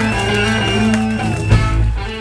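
Live ska band playing: saxophone, electric guitar and drum kit, with held horn notes over the guitar and a loud drum hit about one and a half seconds in.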